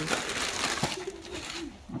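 Clear plastic packaging rustling and crinkling as it is pulled off a folded children's play tunnel, fading out, then a short, soft, low hum-like vocal sound that falls in pitch near the end.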